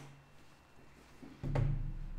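A man's hesitation sounds: a held "um" fading out, about a second of near quiet, then a low hummed voice sound about one and a half seconds in, just before he speaks again.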